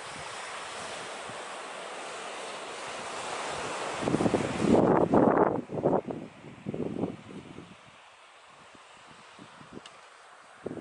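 Sea waves washing on a shingle beach, an even hiss. About four seconds in, gusts of wind buffet the microphone with loud, uneven rumbles for a few seconds, then die away, leaving a fainter wash of surf.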